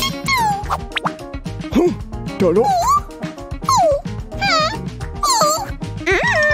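Light background music under a string of short, wordless cartoon-character vocal sounds, each gliding up and down in pitch.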